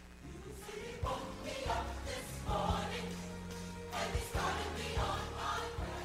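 Music of a choir singing with instrumental accompaniment, growing louder about a second in.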